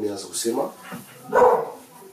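Speech only: a man talking in a room, with a louder exclamation about a second and a half in.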